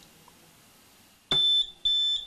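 Household gas detector sounding its alarm: a loud, high-pitched electronic beep in short repeated pulses, about two a second, starting about two-thirds of the way in after a faint quiet stretch. The alarm is the detector signalling that it has sensed gas.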